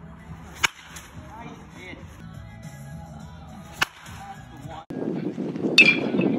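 Baseball bat hitting balls: two sharp cracks about three seconds apart. Near the end, after a louder, noisy outdoor background comes in, a third hit follows with a brief metallic ring.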